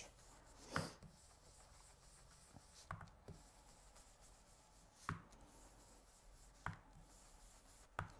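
Faint rubbing and four light taps of an ink blending tool worked over card stock, the taps spaced a second or two apart.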